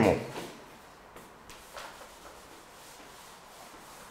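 A cloth rubbing across a chalkboard in a few short, faint wiping strokes as writing is erased.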